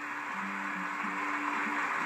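Studio audience applauding, with sustained music notes held underneath. Heard through a television's speaker.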